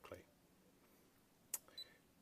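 A single button click about one and a half seconds in, then a short high beep: the Protimeter HygroMaster II's key-press buzzer sounding as its navigation pad is pressed.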